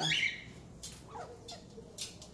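A short squawk from a parrot right at the start, then faint, scattered soft clicks and taps of beaks pecking at a banana.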